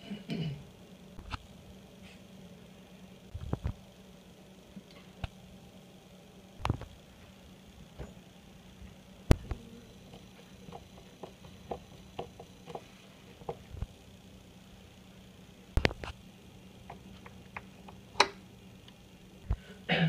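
Scattered sharp clicks and taps of an Allen wrench and a screwdriver working on the metal handle parts of a single-handle chrome kitchen faucet as it is taken apart, with a few louder knocks among them. A faint steady hum runs underneath.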